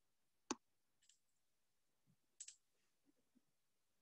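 A few isolated computer mouse clicks over near silence, the sharpest about half a second in and a pair around two and a half seconds in.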